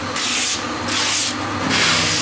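A rhythmic whooshing noise that swells and fades about once every 0.8 seconds, at roughly the pace of a heartbeat.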